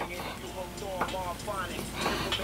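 A faint voice with pitch sliding up and down, over a low steady hum.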